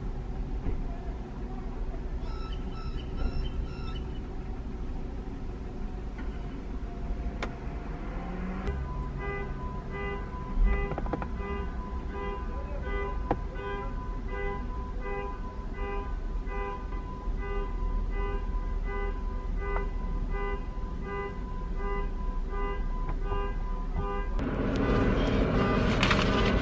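A car's warning chime dinging over and over at an even pace, over a low steady hum, with a brief higher chime about two seconds in. Loud rustling and handling noise takes over near the end.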